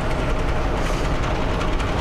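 Steady low rumble and hiss of background noise, with a faint steady hum.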